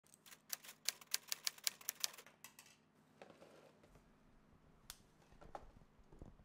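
A quick, uneven run of about a dozen sharp clicks, several a second, for the first two and a half seconds, then faint handling rustle with two single clicks near the end.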